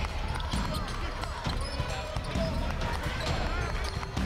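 Live basketball game sound: a crowd of spectators talking and calling out, with a basketball bouncing on the court.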